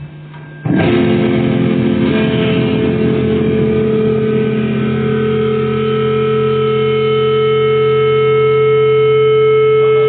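Amplifier hum, then a distorted electric guitar chord struck less than a second in and left ringing. The chord holds for the rest of the time and thins into steady, sustained tones like amp feedback, with no drums.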